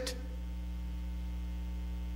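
Steady electrical mains hum: a low, even hum with a stack of evenly spaced overtones that does not change.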